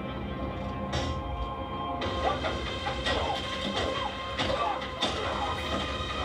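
The TV episode's soundtrack playing: film score music with sustained tones that fill out about two seconds in, and a few short knocks from the episode's sound effects.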